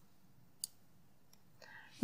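Near silence broken by a few faint computer mouse clicks, the clearest just over half a second in.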